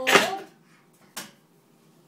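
A toddler's short, loud shout in the first half-second, then a brief sharp sound just over a second in.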